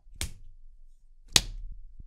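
Two short, sharp smacks close to the microphone, a little over a second apart.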